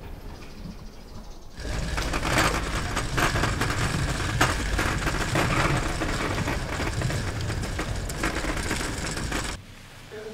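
Metal wheeled gurney rattling and rumbling as it is pushed along a paved street, starting about a second and a half in and cutting off suddenly near the end.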